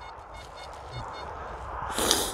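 XP ORX metal detector giving faint, short beeps of one pitch about four times a second, stopping about a second in, as it registers a target reading in the 90s. A low rumble runs underneath, and a brief rush of noise comes at the end.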